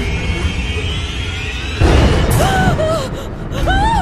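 Film soundtrack: tense background score over a low rumble, broken about two seconds in by a sudden loud hit. Short tones that bend up and down follow it.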